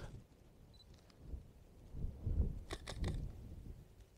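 Micro Four Thirds mirrorless camera's shutter firing several times in quick succession, a tight cluster of clicks about three seconds in, over a faint low rumble.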